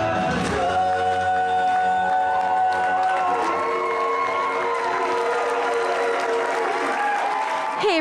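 Live rock number on electric guitars with singing, ending on long held notes while an audience applauds.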